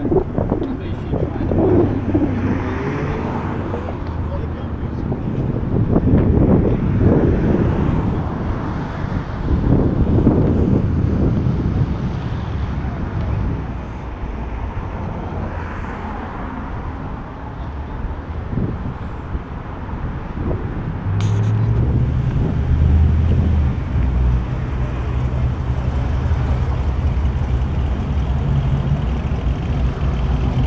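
Background voices and street noise, then a car engine comes in suddenly about two-thirds of the way in and runs on with a low, steady note.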